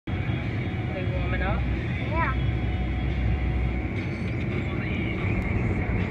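A vehicle's heater fan blowing steadily through the dashboard vents over the low rumble of the idling engine. A person's voice makes two short sounds about one and two seconds in.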